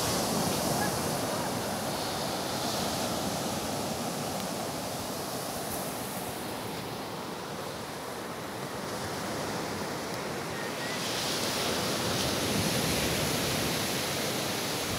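Surf washing onto a sandy beach: a steady rushing wave noise that swells a little near the end.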